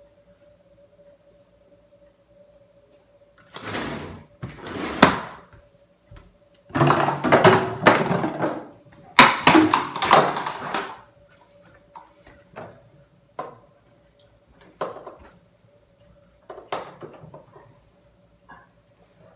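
A person moving about on a floor: three loud bouts of scuffing and thumping, each a second or two long, in the first half, then scattered lighter knocks and clicks. A faint steady hum runs underneath.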